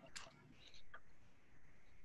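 Faint breathing and a few soft mouth clicks picked up by a webcam microphone, against quiet room tone.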